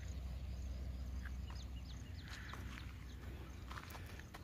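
A bird giving a few short, high, downward-slurred chirps over a faint, steady low rumble of outdoor ambience.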